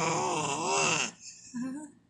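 A seven-month-old baby vocalizing: a long, wavering, high-pitched call lasting about a second, then a shorter, lower sound.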